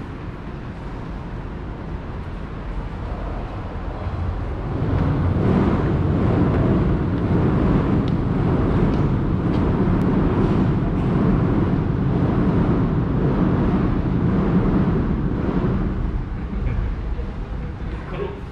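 A train crossing the railway viaduct overhead: a low rumble that swells about four seconds in, holds for some ten seconds and fades near the end, heard from inside the arcade beneath the tracks.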